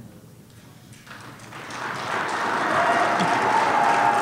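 Audience applauding: clapping starts about a second in and builds to steady applause.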